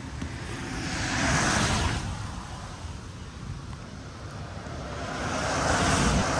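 Vehicles passing on the road. One car's tyre noise swells and fades in the first two seconds, and another builds up near the end, over a steady low rumble.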